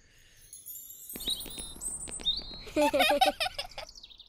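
High chirps and twitters like birdsong, over a run of light clicks, rising to a louder warbling flurry near the end.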